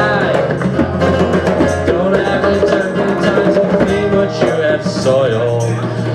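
Live acoustic music: a man singing into a microphone over a strummed acoustic guitar, with light percussion keeping a steady beat.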